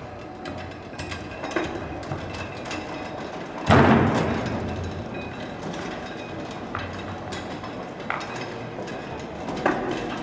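A heavy chain-hung figure sculpture crashes onto the floor about three and a half seconds in, the loudest sound here, with a ringing echo that dies away over a second or so. Steel chains clank and rattle around it, with sharp knocks now and then.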